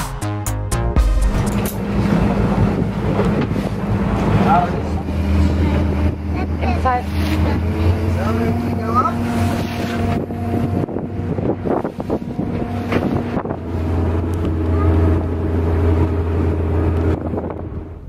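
Parasailing tow speedboat's engine running steadily, with wind buffeting the microphone. A short burst of intro music ends about a second in.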